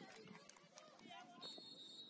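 Faint, distant voices of footballers calling out across an open pitch, with a few light knocks. A thin, steady, high whistle-like tone comes in near the end.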